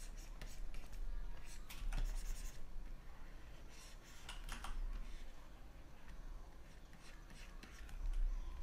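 Stylus nib scratching and tapping on a drawing tablet as lettering strokes are drawn, in short clusters a couple of seconds apart, with a few light key clicks between them.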